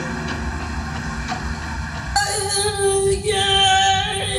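Live stage music: a low drone, then about two seconds in a loud, steady high note comes in suddenly and is held, sung by a woman.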